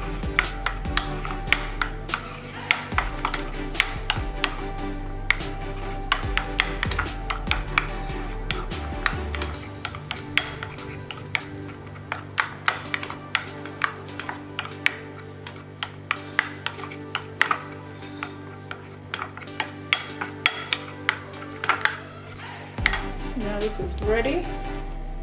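Metal spoon stirring a thin flour-and-cornflour batter in a small glass bowl, clinking against the glass several times a second.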